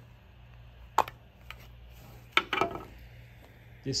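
Sharp plastic clicks from handling a drone remote controller as its bottom cover is pulled down: one click about a second in, a fainter one just after, and another sharp click with a few small ticks about two and a half seconds in.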